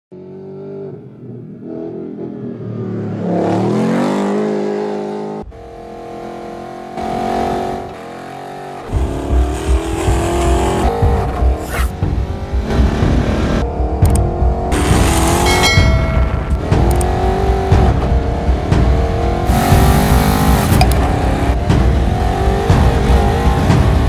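Ford Bronco DR's 5.0-litre V8 engine revving, its pitch rising in a sweep within the first few seconds. From about nine seconds in, the engine runs on under louder background music with a heavy low beat.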